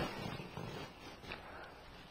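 Faint outdoor background noise in a pause between spoken lines, with a low fluttering rumble.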